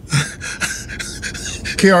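A man laughing breathily, mostly panting air with little voice, before speech resumes near the end.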